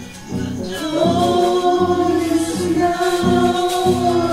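A small group singing together, holding long notes, over acoustic guitar accompaniment; the voices swell in about a second in.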